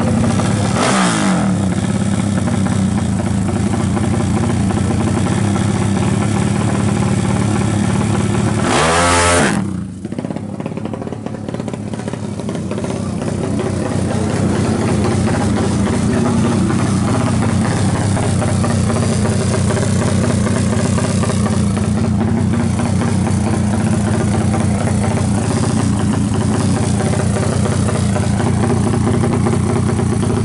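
A 350 cc drag bike's engine idling loudly, with a quick throttle blip about a second in and a harder rev at about nine seconds that cuts off sharply and falls back to a steady idle.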